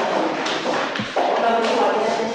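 Indistinct talking voices, with a light thump about a second in.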